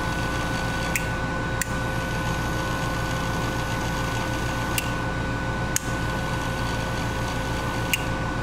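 Small DC motor of a toy car whirring steadily, powered by glucose fuel cells, with a handful of sharp clicks from a toggle switch being flipped between forward and reverse.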